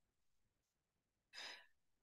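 Near silence, with one short, faint intake of breath a little over a second in.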